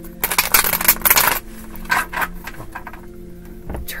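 A mobile phone being handled to switch it to silent after it rang: a burst of clicking, rattling and scraping handling noise lasting about a second near the start, then a few lighter clicks.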